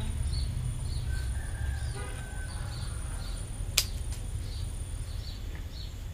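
A small bird chirping over and over, a short high call about every half second, over a steady low rumble. One sharp click sounds about four seconds in.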